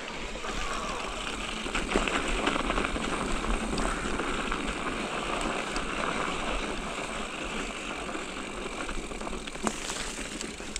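Mountain bike rolling along a dirt and snow singletrack: steady tyre-on-trail noise with the bike rattling, and a sharp click near the end.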